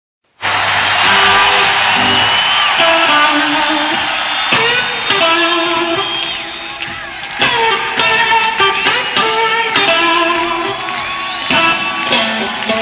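Rock band music led by electric guitar, starting abruptly about half a second in. The guitar plays a lead line with bent notes.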